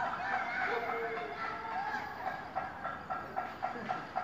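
Distant shouting voices with pots and pans being banged, the strikes coming quickly and unevenly, about four a second, in the second half: a panelaço, a pot-banging protest.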